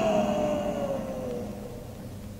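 The last sustained note of an effects-laden electric guitar intro jingle, sliding slowly down in pitch as it fades out and dying away about one and a half seconds in.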